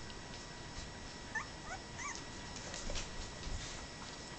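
Two-week-old Brittany puppy giving three short, rising, squeaky whimpers in quick succession, followed by faint scratchy rustling.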